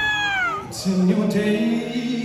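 Live concert sound: a high voice holds one note that slides down and breaks off about half a second in, followed by lower sustained notes.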